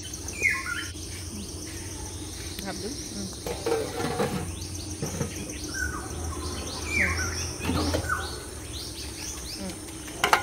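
Birds chirping repeatedly in short falling notes, the loudest about half a second in and again about seven seconds in, over a steady high-pitched insect drone.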